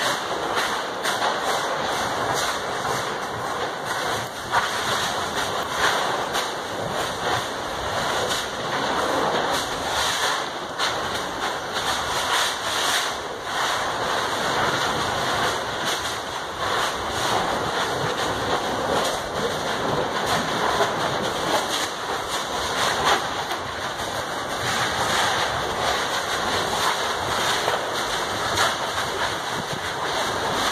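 Steady rushing hiss with many small crackles and pops throughout, from vegetation burning and smouldering where lava has run into the forest.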